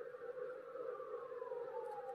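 A faint, sustained wailing tone that slowly falls in pitch, over a steady low hum.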